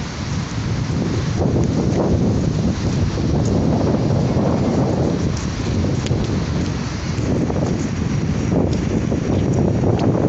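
Wind buffeting the microphone: a loud, low rush with no steady tone that grows stronger about a second in and keeps rising and falling in gusts.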